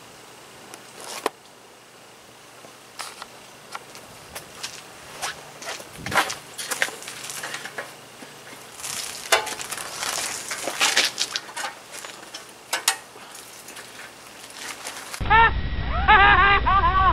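Scattered clicks, knocks and rattles of an old Murray bicycle being handled, mounted and pedalled off on a concrete driveway. Near the end a louder sound with repeated pitched chirps cuts in abruptly.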